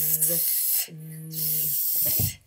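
A child's voice holding the voiced 'th' sound twice, each about a second long: a steady hum at one pitch with a hiss of breath over it, his voicing switched on for the 'th'.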